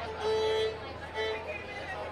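Live bluegrass string band: a fiddle holds a few long notes over mandolin, then the notes stop about halfway through and talk takes over.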